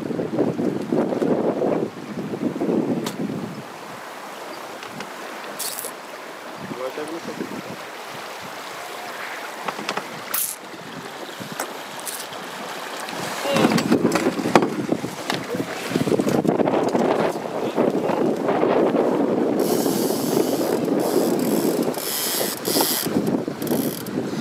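Wind buffeting the microphone on a small sailboat under way in choppy water, in gusts that grow stronger about halfway through. A few sharp clicks and knocks from the boat's fittings come through in the quieter stretch.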